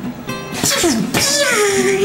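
A person laughing in sudden bursts, then a drawn-out vocal sound that slides down in pitch and settles on a held note, over background music.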